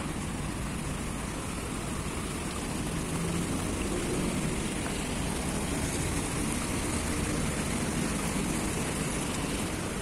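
Small bubbler fountain jets splashing steadily into a shallow pool: an even hiss of falling water, a little louder in the middle.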